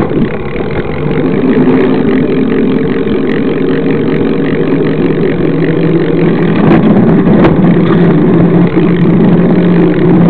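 Continuous riding noise picked up by a camera mounted low on a moving bicycle: rushing wind and road rumble with a steady drone under it.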